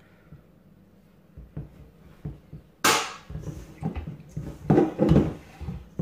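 Bread dough being mixed by hand in a stainless steel bowl: irregular soft knocks and handling noises, with one sharper knock about three seconds in.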